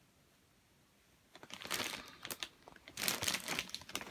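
Glossy paper pages of a model-kit instruction booklet rustling and crinkling as they are handled and turned. It starts about a third of the way in, after a moment of near silence.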